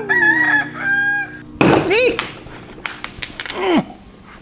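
Chickens calling: a rooster crowing, held and then falling in pitch, followed by a loud squawk at about two seconds and a short falling call near the end.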